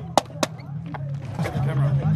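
Two sharp clacks of a skateboard hitting the concrete, about a quarter second apart, over a steady low hum and faint voices.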